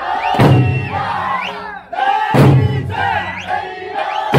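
Okinawan Eisaa taiko drums struck together about every two seconds, each a deep boom. Between the booms come a held sung line and the dancers' rising shouts.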